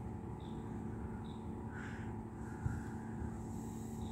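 Two short, high bird notes in the first second and a half, then fainter, longer calls in the middle, over a steady low hum.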